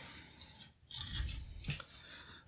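Faint metallic clicks and scrapes from handling a laptop hard drive in its metal mounting bracket, a few light clicks spread through the moment.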